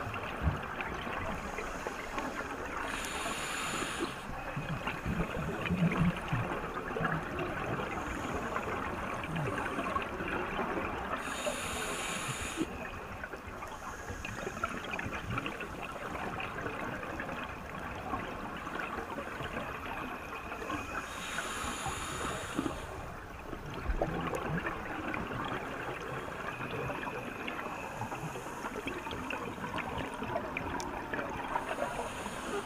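Underwater ambience on a reef: a steady crackling hiss, broken three times, roughly every nine seconds, by a short rush of scuba regulator exhaust bubbles as the diver breathes out.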